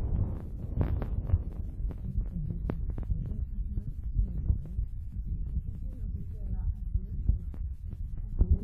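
Low rumbling and thumping of a handheld phone's microphone being rubbed and jostled, with scattered small clicks and faint murmured voices underneath.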